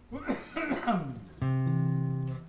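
A man's voice briefly, then about a second and a half in a chord on an acoustic guitar starts sharply and rings steadily.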